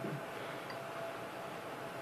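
Low, steady background hiss with a faint, thin high tone held steady, fading out near the end.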